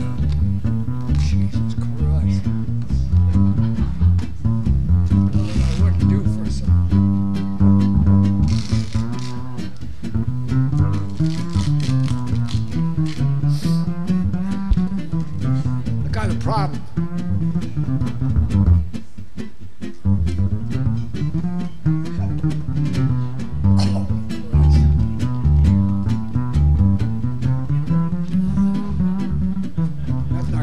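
Live jazz trio of electric guitars and upright double bass, with the plucked bass line moving up and down prominently under the guitars.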